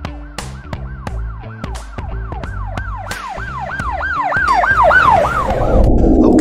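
Intro music with a police-style siren sound effect: a repeating falling wail, about three sweeps a second, growing louder toward the end, over a bass line and beat.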